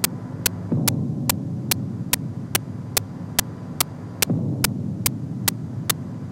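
A steady low hum with a sharp tick repeating evenly about two and a half times a second, a playback or transfer fault in the old recording that also runs under the narration. The hum swells into a low rumble twice, about a second in and again past four seconds.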